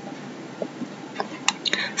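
A pause in a woman's narration: steady background hiss, then faint breathy mouth sounds and clicks in the second half as she gets ready to speak again.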